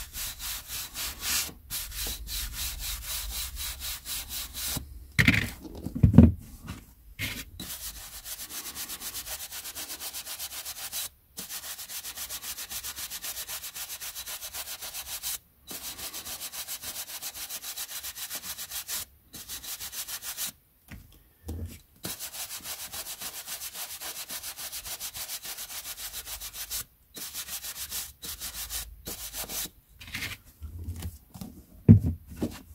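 A wooden-backed bristle brush scrubbing quickly back and forth across the page edges of old paperback books, brushing off dust, in fast even strokes broken by short pauses. Two louder thumps about five and six seconds in.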